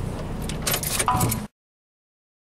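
Keys jangling and rattling inside a parked car over a low steady hum, with a short steady tone just after a second in. Everything cuts off to total silence about one and a half seconds in.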